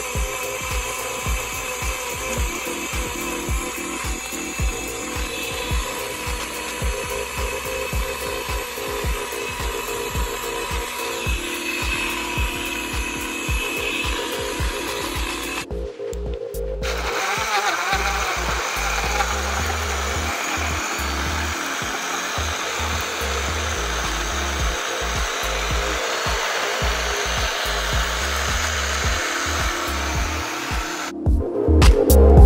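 BlendJet 2 cordless portable blender running, its small motor whirring as the blade spins a smoothie in the jar. The sound breaks off briefly about halfway and the blending starts again with a fuller, steadier whir.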